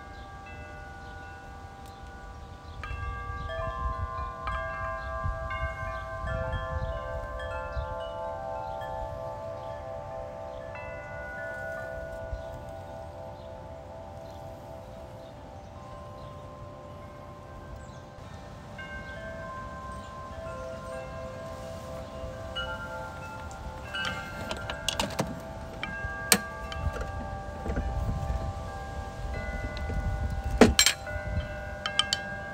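Wind chimes ringing in a breeze, many tones at different pitches struck at random and left to ring on, with wind rumbling on the microphone at times. A few sharp clicks come near the end.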